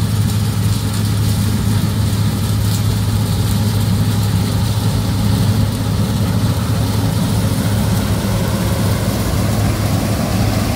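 John Deere combine harvester running while it harvests a dry crop: a steady, even engine drone with a strong low hum that holds level throughout.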